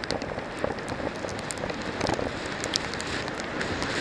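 Mountain bike tyres rolling fast over a wet, muddy dirt track, with many small clicks and spatters of mud and grit, under steady wind noise on the helmet-mounted camera's microphone.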